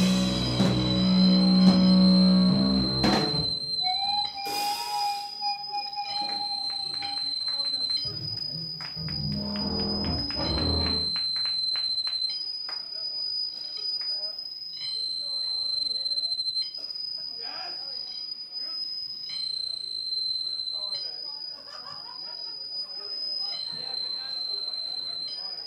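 A live punk band's bass and drums end a song about three seconds in. After that, a high-pitched electronic tone left sounding from the band's gear keeps switching back and forth between two pitches, each held a second or two, with crowd chatter underneath.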